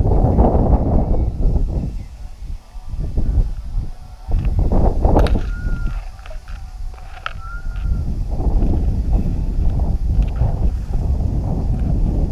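Strong wind buffeting the action camera's microphone in gusts, a deep rumble that rises and falls, with tall grass rustling against the moving hiker.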